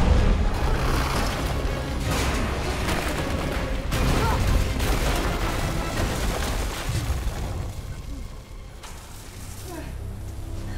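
Action-film soundtrack: heavy booms and rumbling crashes over dramatic score music, easing off near the end.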